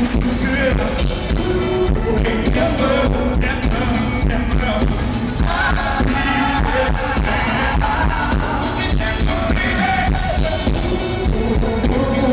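Live R&B band playing with a male lead singer, with a steady drum beat, recorded loud from the audience.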